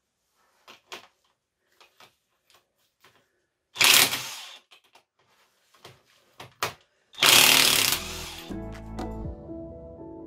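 Cordless impact wrench run in two short bursts, about four seconds in and again near seven seconds, undoing the 19 mm bolts that hold the ring gear to a BMW differential carrier, with light clicks and knocks of handling the parts between. Background music comes in near the end.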